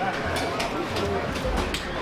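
Indistinct low speech with scattered sharp clicks and rustles of handling.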